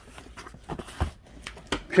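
A flat cardboard record mailer being handled and laid on a box: light scrapes and knocks of cardboard, with one dull thump about a second in.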